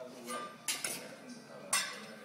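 Steel Chinese cleaver clinking and knocking on a wooden cutting board: a quick pair of sharp metallic strikes, then a louder one near the end, each with a short ring.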